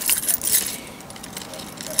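A bunch of metal keys jangling and clinking as they swing from a hand, busiest in the first half-second or so, then fading.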